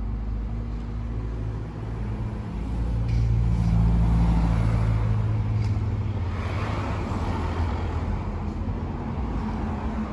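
Road traffic: a car engine running close by swells to its loudest about four seconds in, then tyre noise rises as a car goes past.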